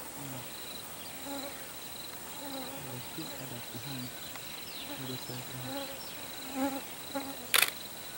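Insects calling in the bush: a steady, high-pitched pulsing trill that runs on evenly, with one sharp click near the end.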